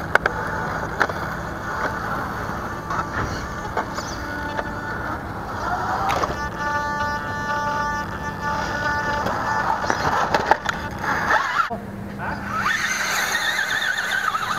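Background chatter and music in a large indoor hall, with occasional knocks of a scale RC rock crawler's tyres and chassis against the rocks. A steady tone sounds for about three seconds in the middle.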